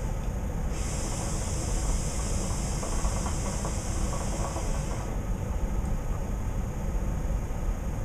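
A long draw on a hookah: a steady hiss of air pulled through the hose and water, starting about a second in and stopping about five seconds in, over a low steady room rumble.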